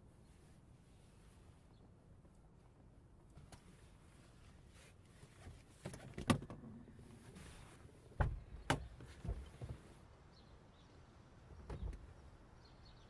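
Sharp clicks and knocks inside a parked car as the passenger door is opened and someone gets out: a single click about halfway through, a cluster of clacks and thumps about two seconds later, and a thud near the end.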